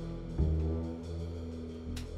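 Small jazz band holding long sustained notes on horns over upright bass, with a fresh attack about half a second in, likely the tune's closing chord.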